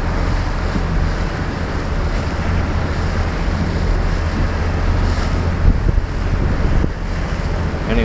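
Strong wind buffeting the microphone over choppy harbour water, with the steady low drone of the lobster boat's engine underneath.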